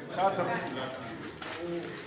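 A man counting aloud in French, calling out numbers one at a time as ballots are tallied.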